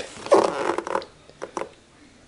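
Clear plastic display case being turned and slid on a wooden tabletop: a short scraping rub, then a couple of light plastic clicks.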